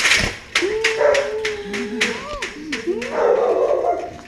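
A dog whining, its drawn-out cries sliding up and down in pitch, over a scatter of short sharp clicks.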